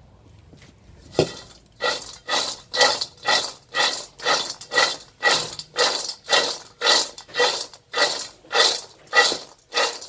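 Dried wild seeded-banana (chuối hột) pieces rattling and sliding in a metal frying pan as it is tossed. The tosses come at an even pace of about two a second, starting about a second in. This is the dry-roasting (sao vàng) stage, taking the pieces to golden.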